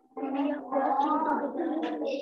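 A person's voice over a video call: one long, drawn-out utterance in which no words can be made out.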